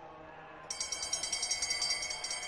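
Bell-lap bell rung rapidly and continuously, a bright metallic ringing that starts about two-thirds of a second in, signalling the runners' final lap. Faint stadium crowd noise lies underneath.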